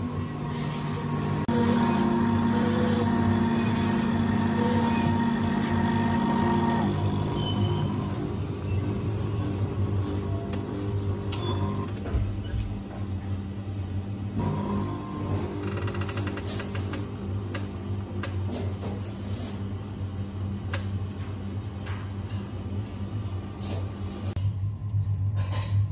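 Miko Maestro coffee vending machine running as it dispenses a drink into a mug: a steady machine hum throughout, louder for the first several seconds, as frothed milk and then coffee are dispensed.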